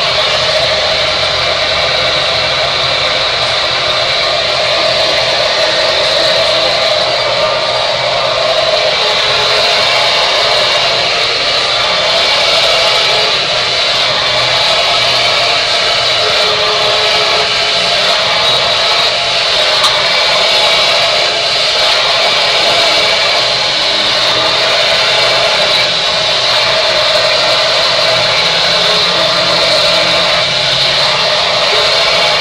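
Handheld hair dryer running steadily as it blow-dries a person's hair: a loud, even rush of blown air without a break.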